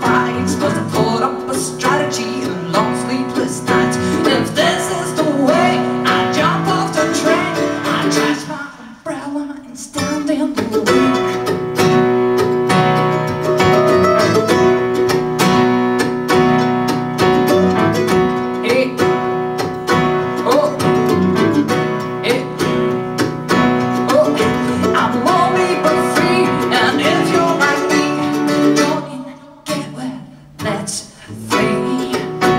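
Live acoustic song: a woman singing with two acoustic guitars. The music breaks off briefly about nine seconds in and falls away again near the end.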